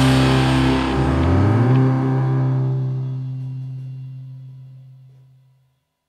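A rock band's final chord ringing out: distorted electric guitars, bass and cymbal wash decaying together, with a low bass note holding longest until everything dies away about five and a half seconds in.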